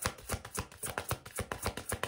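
A deck of tarot cards being shuffled by hand: a quick, even run of small card clicks.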